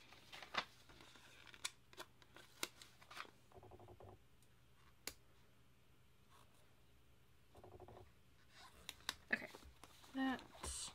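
Faint paper-handling sounds: scattered light clicks and taps as stickers are pressed down onto planner pages by hand, with long quiet stretches between them.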